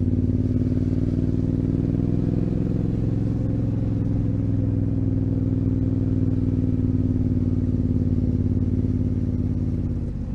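Yamaha Ténéré 700's parallel-twin engine running steadily as the bike rolls down a steep lane, its note wavering only slightly in pitch.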